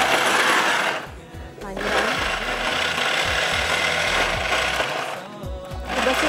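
Countertop blender chopping a jug of raw chopped tomato, cucumber and other vegetables, run in pulses. It runs loud, stops for under a second about a second in, runs again, then stops briefly near the end.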